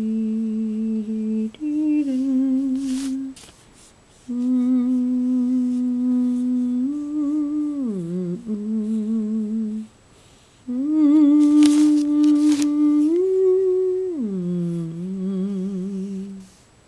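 A person humming a slow, wordless tune in long held notes, some wavering and a couple gliding down, with two short breaks between phrases.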